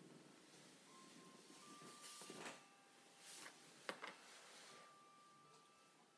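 Near silence: quiet room tone with a few faint rustles and a single soft click about four seconds in.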